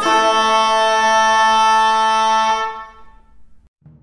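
Renaissance wind instruments holding the final chord of a piece. The chord cuts off about two and a half seconds in and dies away in the hall's echo, and a soft low drum comes in near the end.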